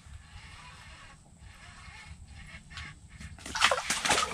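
A hooked crappie splashing as it is pulled up out of the ice hole: about three seconds of quiet, then a sudden loud burst of splashing and flopping near the end.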